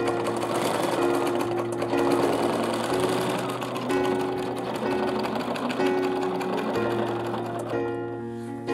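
Bernina B740 domestic sewing machine stitching fast and without pause, the needle going up and down in free-motion thread painting with the feed dogs down.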